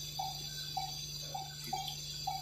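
Short, single-pitched electronic beeps repeating evenly, a little under twice a second, over a steady low hum.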